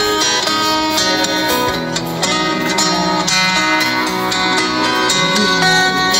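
Music led by plucked guitar, played at a steady level with many quick notes.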